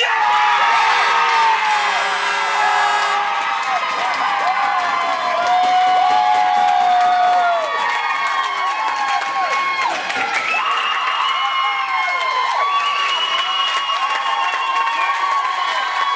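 Crowd of spectators cheering after a goal, with many high voices shouting and screaming together and some clapping.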